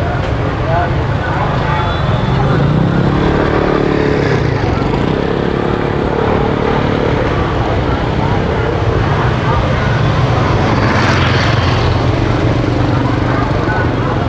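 Street traffic noise, with motorbike engines running nearby and a steady low hum throughout. Voices in the background, and a louder noisy stretch around eleven seconds in.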